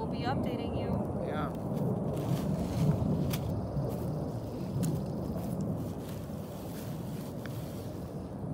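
Wind rumbling on the microphone, with plastic bags rustling and a few sharp crinkles as they are handled.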